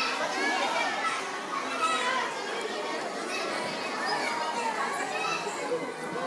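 A group of young children talking and calling out over one another.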